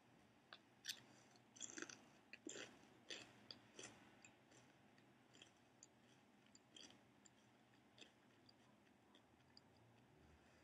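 A potato chip being bitten and chewed: quiet, crisp crunches come thick through the first four seconds or so, then thin out to a few faint ticks as the chewing slows.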